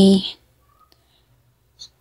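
A woman's voice ends a phrase, then it is nearly quiet, with a few faint small clicks and one short, sharper click just before she speaks again.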